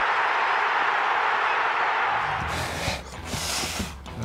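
Title-sequence sound effect: a steady rushing noise for about two and a half seconds, then a low music beat comes back with two short bursts of hiss near the end.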